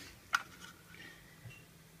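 A single sharp tap about a third of a second in, a clear plastic ruler knocking against a wooden boom of the frame as it is moved into place, with faint handling rustle around it.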